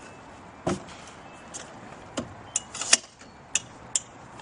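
A manual wheelchair being handled beside a car: a series of about seven sharp clicks and knocks, metal on metal, with the loudest cluster about three seconds in.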